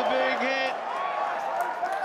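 A man's voice in short bursts over steady background noise from the ground during a rugby match.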